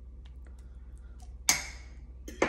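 A metal fork clinks once, sharply, against the slow cooker's ceramic crock about a second and a half in, with a short ringing tail. Before it come a few faint ticks of the fork in the soup.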